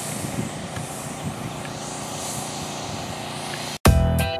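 Steady outdoor road noise, a low vehicle rumble with hiss, as a pickup truck drives along a rural road. Near the end it cuts off abruptly and music starts.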